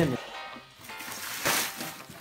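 Light background music, with a short burst of rustling about one and a half seconds in as a cardboard box stuffed with shredded paper packing is handled.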